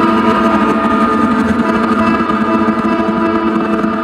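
Improvised ambient music from electric guitar, double bass and electronics triggered from a pad controller: a dense bed of sustained, overlapping held tones with no sharp attacks.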